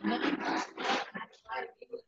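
A person's voice over a video call, indistinct and rough-edged, in a run of syllable-like bursts that thin out into shorter, sparser ones in the second half.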